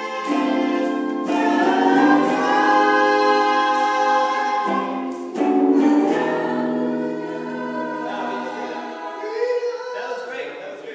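Music: a choir of voices singing long held notes in chords, with a brief break about five seconds in.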